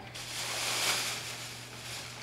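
Large black plastic garbage bag rustling and crinkling as it is picked up and carried. The rustle swells to its loudest about a second in, then fades.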